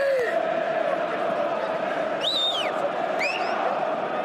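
A man's loud, high-pitched whistles over steady stadium crowd noise: one rising and falling whistle about two seconds in, then a shorter rising one a second later. It is a football manager whistling from the touchline to get a player's attention.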